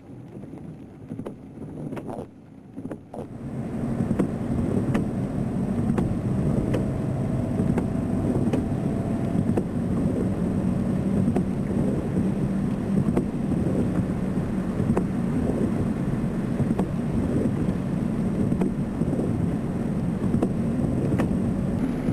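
A dense, steady low rumble that comes in loud about three seconds in after a quieter start, then holds evenly.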